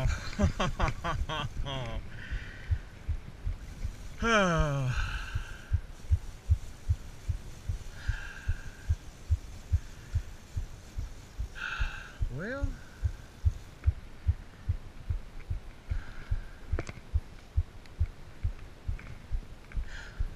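A man groaning in disappointment with a long falling pitch, twice in the first few seconds, after losing a hooked tarpon. Soft low thumps repeat about twice a second underneath.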